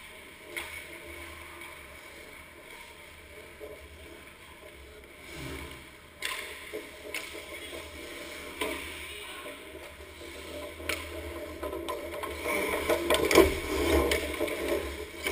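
Ice hockey play: skate blades scraping the ice, with a handful of sharp clacks of sticks and puck scattered through. It grows louder and busier near the end as skaters close in on the net.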